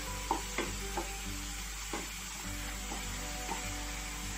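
Sliced onions and ginger-garlic-green chilli paste sizzling in hot oil in a non-stick kadhai as a wooden spatula stirs them, with a few light scrapes and taps of the spatula against the pan.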